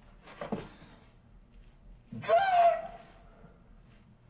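A man groaning in pain twice: a short, low groan about half a second in, then a louder, longer cry about two seconds in.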